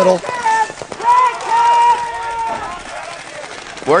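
A person's voice holding one long, high shout for about a second and a half, after a brief spoken word at the start.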